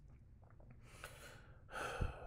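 A person breathing close to the microphone between sentences: a short breath about a second in, then a louder intake of breath near the end.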